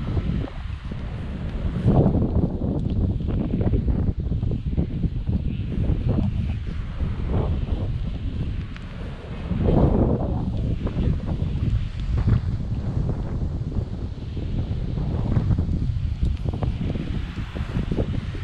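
Wind buffeting the microphone, a steady low rumble that swells in gusts about two seconds in and again around ten seconds.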